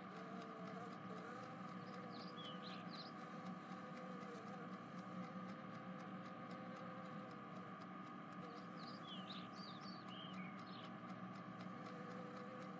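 Faint ambient background of an animated scene: a steady low hum with two short runs of faint, high, falling chirps, one about two seconds in and another near the end.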